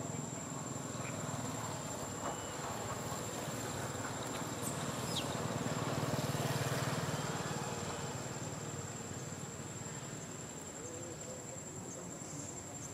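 Outdoor ambience: a steady high-pitched insect drone over a low rumble that swells about six seconds in and fades again.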